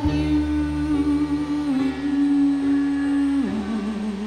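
A woman's voice holding one long, steady note over a karaoke backing track. Near the end the note drops to a lower pitch and wavers with vibrato.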